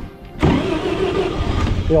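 Ford Model T four-cylinder engine starting: after a short lull it catches suddenly about half a second in and keeps running loudly with a steady low rumble.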